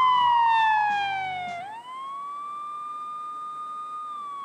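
Siren-like electronic tone in a TV segment's title sting: a high held note slides down for about a second and a half, swoops back up, and then holds steady. The backing music drops out as the note falls.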